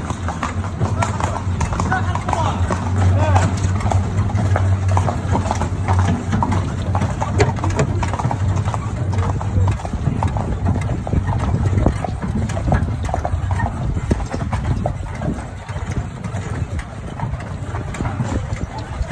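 Hooves of a horse pulling a carriage, clip-clopping steadily along the path.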